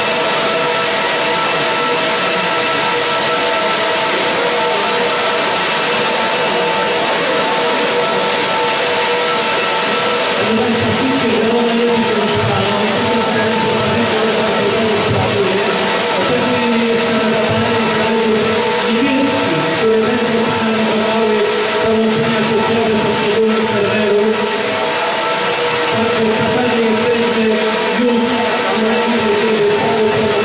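Server racks of the Prometheus supercomputer running: a loud, steady rushing of cooling fans with several fixed whining tones. About ten seconds in, further lower tones join, coming and going in stretches of a few seconds and gliding once.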